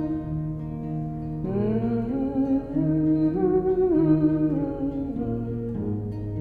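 Acoustic guitar holding slow chords, with a woman humming a wordless, wavering melody over it from about a second and a half in until near the end.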